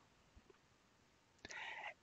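Near silence, then a short, faint breath near the end.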